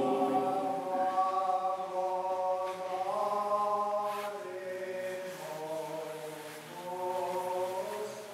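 Orthodox liturgical chant: voices singing slow, long-held notes that move together from one pitch to the next.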